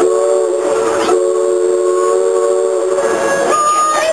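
Steamboat whistle blown by pulling its cord: one long, steady chord of several tones, wavering slightly about a second in, with a higher tone near the end.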